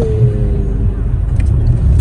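Low, steady rumble of a car heard from inside its cabin: a Toyota RAV4 running while it waits to pull into the service bay.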